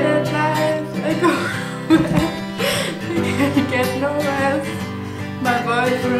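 Acoustic guitar music with a woman's voice singing loudly over it, singing along to a song that only she hears on her headphones.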